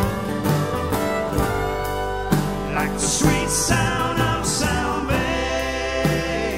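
Live band playing a country-rock song on fiddle, electric guitars and drums, with cymbal crashes in the middle.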